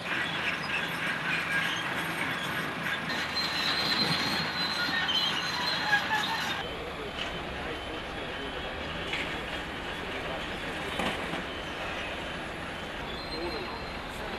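Construction-site noise of heavy machinery: high metallic squeals and scraping over a rumble for the first six and a half seconds. The sound then changes abruptly to a steadier, duller machinery rumble.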